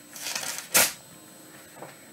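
Paper rustling as pages are handled, with one short, sharper swish a little before the middle.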